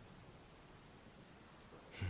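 Faint, steady rain falling, heard as a soft even hiss of drops.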